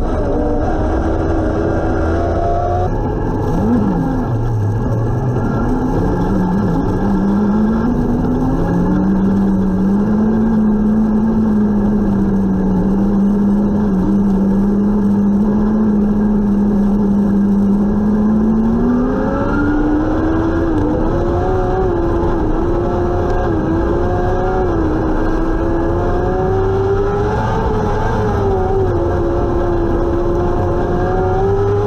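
Engine of a winged Restrictor-class dirt-track sprint car, heard from the cockpit, running hard over constant loud road noise. Its pitch drops sharply about three seconds in, holds low and steady through the middle, then climbs and wavers up and down over the last third as the throttle is worked again.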